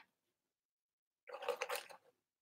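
Mostly quiet, then faint handling noise: a few small clicks and rustles of a small glass spray bottle being turned over in the hands, about one and a half seconds in.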